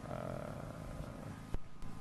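A man's drawn-out hesitation sound, a held "uhh", for about the first second, then a single faint click about a second and a half in.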